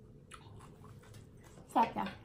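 Faint, irregular mouth sounds of a person chewing food, with soft wet clicks, then a short voiced sound near the end.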